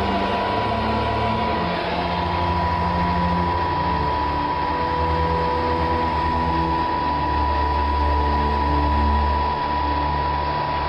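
Miniature wind tunnel fan motor running at a steady speed: a constant high whine over a low drone that shifts in pitch.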